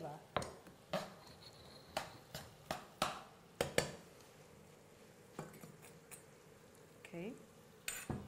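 A metal spoon knocking and scraping against a frying pan as onions are stirred: about eight sharp clinks in the first four seconds, then one more later on.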